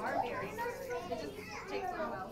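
Many young children talking and calling out at once, a busy overlapping chatter of small voices.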